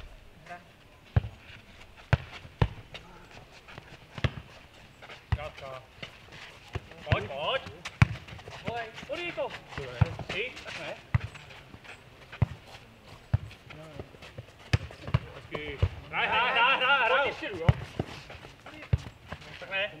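A futnet ball being kicked, headed and bouncing on a dirt court in a rally, giving sharp irregular thuds throughout. Players' shouts come in between, with a loud call about sixteen seconds in.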